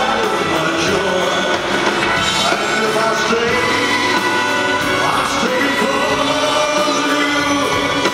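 Live band with electric bass and drums backing a male lead singer who holds long, wavering notes into a microphone.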